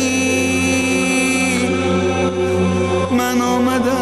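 Devotional music with chant-like singing: a voice holds long notes with small wavering ornaments over a steady low drone.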